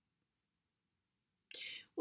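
Near silence, then near the end a short, breathy intake of breath as a woman's voice starts to speak.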